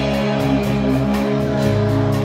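Live praise band playing without vocals: electric bass and guitar hold sustained chords over drums, the bass moving to a new note near the end.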